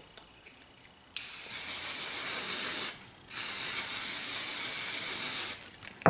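Aerosol can of heat-protectant hair spray spraying onto hair in two long hisses, each about two seconds, with a short break between.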